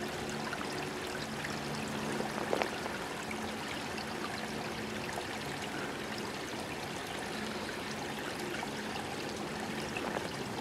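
Shallow creek water running and trickling steadily over its rocky bed.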